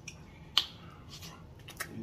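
Mouth sounds of a person eating: a few sharp wet clicks from lips and tongue smacking while chewing, one about half a second in and a quick cluster near the end.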